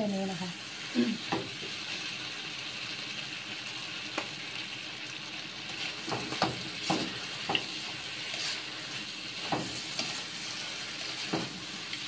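Squid sizzling as it is stir-fried in a wok, with a metal spatula scraping and knocking against the pan every second or two as the squid is tossed in its sauce, the knocks coming thickest about halfway through.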